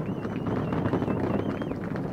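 The roar of an LVM3 rocket climbing after liftoff, heard as a steady, rough rumble. At this stage of flight it comes from the two S200 solid rocket boosters.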